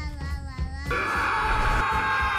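Animated-film soundtrack: a brief drawn-out voice, then about a second in, loud sustained screaming sets in over film score music.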